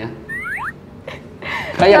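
A short comic sound effect of quick squeaky whistle-like glides, about half a second long, followed by speech.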